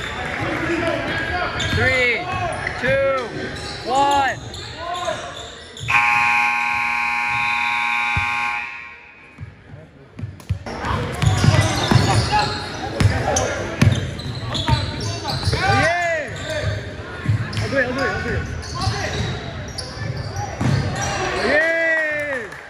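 Indoor basketball play on a hardwood court: sneakers squeaking sharply and the ball bouncing, with players' and spectators' voices echoing in the gym. A steady horn sounds for about two and a half seconds a quarter of the way through, typical of a scoreboard buzzer.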